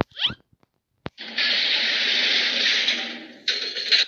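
Sound effects: a quick falling pitch glide, a single click about a second in, then about two seconds of steady, harsh whirring noise like a small motor, which fades and is followed by a shorter second burst near the end.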